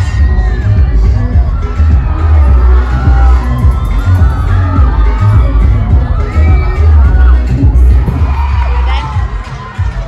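Large crowd of students cheering and shouting over loud music with a heavy bass from a PA system.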